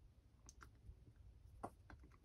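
Near silence with a few faint clicks as the hands handle an aluminum smartphone tripod mount, an Ulanzi ST-02S.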